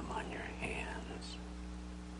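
A soft, whispered voice for about the first second, fading out, over a steady electrical hum and hiss that carry on alone afterwards.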